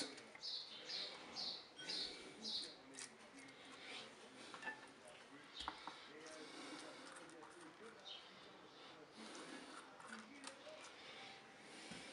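Quiet handling sounds of a basting brush dabbing marinade onto raw pork chops in a ceramic dish, with a few soft clicks and knocks as the chops are turned. A quick series of short high chirps sounds in the first two seconds.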